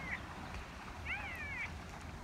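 An elk giving a short mewing chirp that rises and falls in pitch, about a second in, after a fainter one at the very start.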